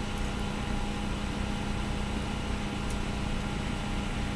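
Steady low hum with an even hiss, unchanging throughout: background room noise.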